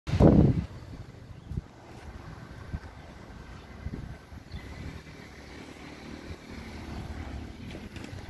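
Outdoor street ambience picked up by a handheld camera: a low rumble of wind on the microphone with faint passing traffic. There is a loud bump in the first half-second and a few short knocks from handling the camera.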